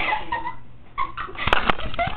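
Girls' high-pitched squealing and giggling voices, no words, rising and falling in pitch. Sharp knocks about one and a half seconds in, from the webcam being handled.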